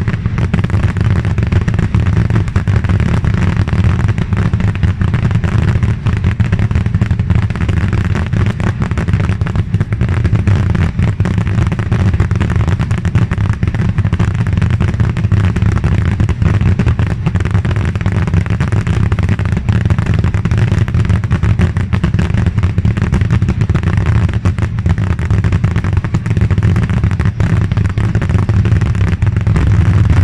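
Massed barrage of voladores (Asturian skyrockets) launching and bursting, so many at once that the bangs overlap into one unbroken, heavy din with no pause.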